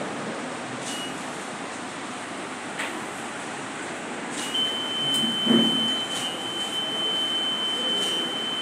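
Electronic voting machine beeping: a brief high beep about a second in, then a long, steady beep at the same pitch from about halfway through, the signal that a vote has been recorded.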